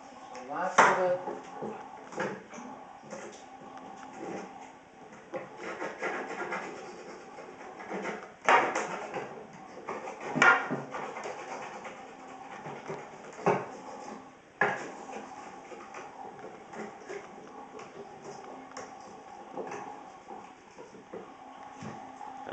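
Scraping and clattering of plastic aquarium pipework being cleaned of algae with the back of a knife, with a handful of sharp knocks scattered through, the loudest a little under a second in and about eight and a half and ten and a half seconds in.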